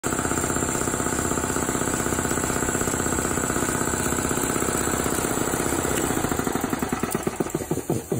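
Electric piston air compressor running, its pump knocking in a fast, even beat of about a dozen pulses a second. Near the end the beat slows and spreads out as the compressor runs down.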